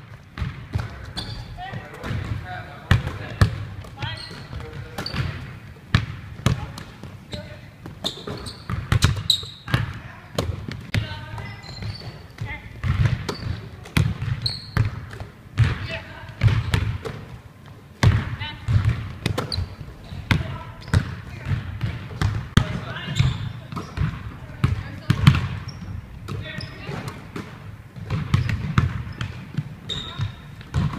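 Several basketballs being dribbled and bounced on a hardwood gym floor, a steady irregular run of thuds from more than one ball at once.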